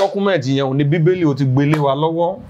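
A man talking continuously, without pause.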